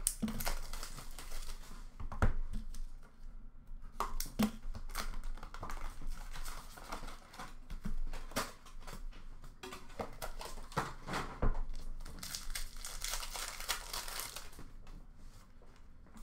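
Hands unwrapping and tearing open an Upper Deck Trilogy hockey card box and its packs, with wrapper crinkling and tearing. Cards and cardboard give short taps on a glass counter throughout, and there is a longer stretch of rustling near the end.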